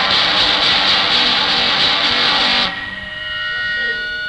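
Early-'80s hardcore punk band playing flat out, with distorted electric guitar and drums, on a raw rehearsal-room cassette recording. The band stops abruptly about two and a half seconds in, leaving sustained guitar tones ringing.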